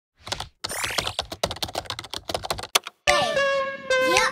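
Rapid typing on a computer keyboard, a fast clatter of keystrokes for about three seconds with a rising whoosh under the first part. After a short break, music with sustained tones and falling glides comes in.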